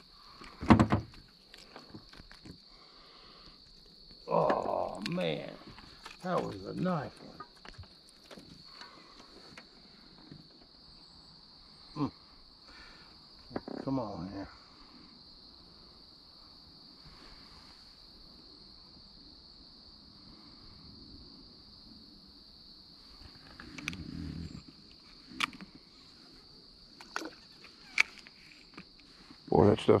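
Steady high-pitched drone of insects, with a few sharp clicks or knocks scattered through it.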